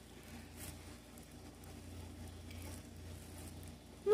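Faint handling noise: low, uneven rumbles with a few soft clicks and rustles.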